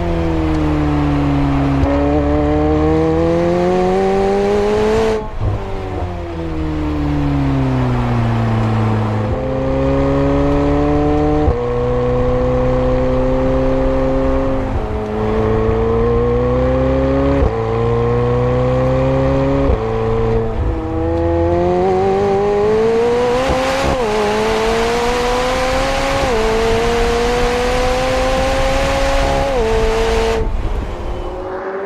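McLaren 765LT's twin-turbocharged V8 being driven hard, its note falling as the car slows about a third of the way in. After that it climbs through the gears, the pitch rising and then dropping back sharply at each of several quick upshifts.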